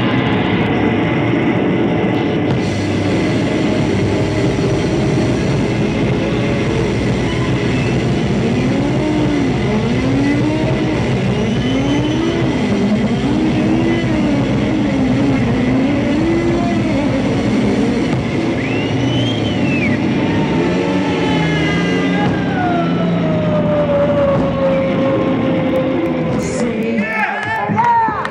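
Loud improvised noise-rock instrumental: electric guitars and drums in a dense, steady wash. Through the middle, a guitar line bends up and down in repeated arching glides about once a second. Near the end, one long guitar glide falls in pitch.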